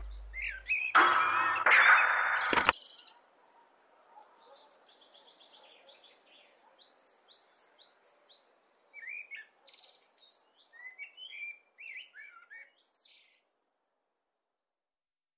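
The music cuts off about three seconds in. Faint birdsong follows: scattered chirps and runs of short repeated calls over a soft background hiss, dying away near the end.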